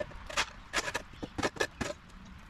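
Shovel scraping loosened dirt and sod clumps off a concrete driveway: a run of about five short, irregular scrapes.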